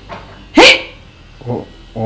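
A dog barks once, a single loud bark just over half a second in.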